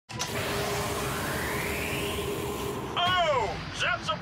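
An animated video game starting up: a steady hum under a noisy rising whoosh, then, about three seconds in, a dramatic voice calling out with sharply falling pitch, beginning the game's title call 'Oh! That's a Baseball!'.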